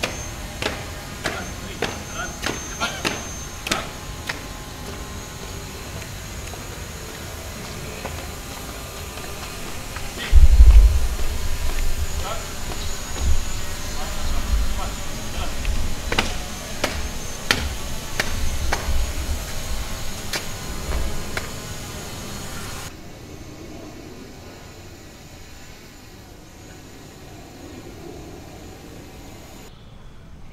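Footsteps of a flag party marching on paving, even steps at about two to three a second for the first few seconds. In the middle, heavy low rumbling bursts of wind on the microphone are the loudest sound. The sound drops quieter for the last several seconds.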